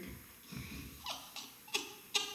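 Short bursts of laughter.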